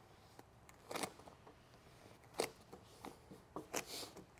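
Faint, short scrapes of a hand squeegee sliding over vinyl wrap film, several brief strokes at irregular intervals as the film is smoothed down over a body line.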